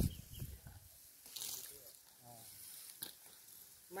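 Mostly quiet: a faint, brief voice and two soft clicks, one about a second in and one about three seconds in.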